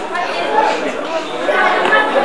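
Several people talking at once around a table: overlapping chatter.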